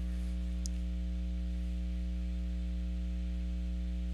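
Steady electrical mains hum with a light hiss, with one faint click about half a second in.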